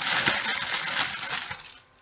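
Clear plastic wrapping on bundled cotton-boll stem picks crinkling as they are handled, a dense crackle that fades out shortly before the end.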